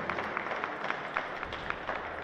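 Scattered applause: several people clapping, heard as a run of sharp, irregular hand claps.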